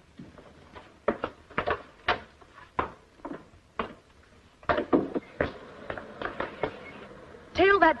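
Footsteps on a hard floor, about two a second, followed by a heavy door being worked.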